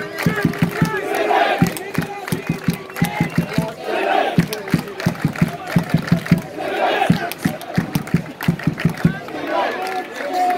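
Football crowd shouting and calling out, with close, sharp hand claps in irregular runs, thickest from about the fourth to the seventh second.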